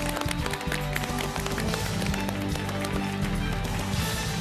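Background music with the studio audience and host clapping in applause.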